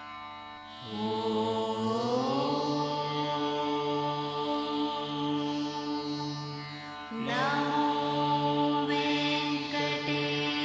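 Devotional chanting with musical accompaniment: long held phrases, each starting with an upward slide, one entering about a second in and another about seven seconds in.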